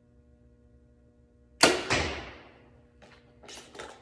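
Compound bow fired with a Nock On Silverback back-tension release: a sharp shot about a second and a half in, with a second thud a third of a second later and a short ringing decay. A few light clicks and rustles of handling follow near the end.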